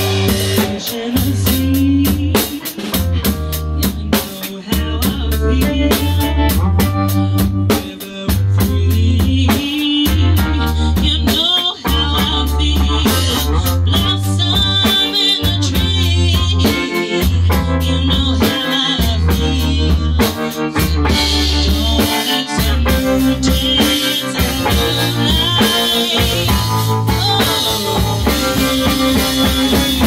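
Live rock band playing an instrumental section without vocals: a busy drum kit, with kick, snare and cymbal hits throughout, drives a heavy bass line.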